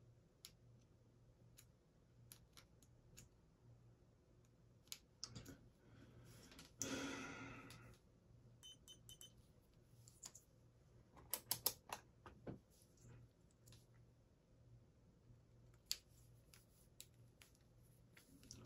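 Faint scattered clicks and taps of multimeter probe tips and yellow XT-style plastic plug connectors being handled, with a quick run of sharper clicks a little past halfway. A brief soft noise lasting about a second comes about seven seconds in, over a faint steady low hum.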